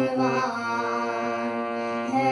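Harmonium playing held notes of a bhajan melody: steady reed tones that move to new notes a couple of times.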